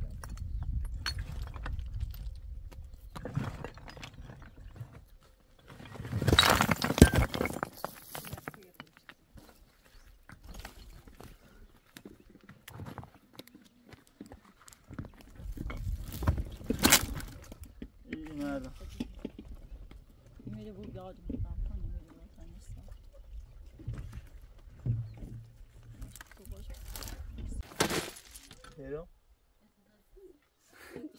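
Large rocks knocking and scraping against stone as they are shifted by hand, in irregular bursts. The loudest is a couple of seconds of grinding clatter about six seconds in, with further sharp knocks near the middle and near the end.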